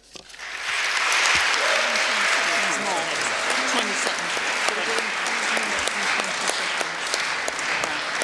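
Large audience applauding, the clapping building up within the first second and then holding steady.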